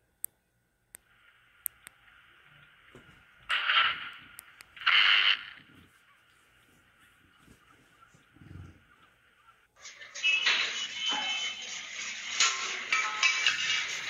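Two loud, short crackling bursts about a second and a half apart, a few seconds in, from power cables shorting and arcing at a roadside utility pole, heard through a dashcam's microphone over a steady hiss. From about ten seconds in, music takes over.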